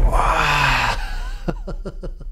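Edited-in electronic sound effects: a noisy swoosh with a falling low tone dies away over the first second. About halfway in, a rapid run of short beeps starts, about five a second.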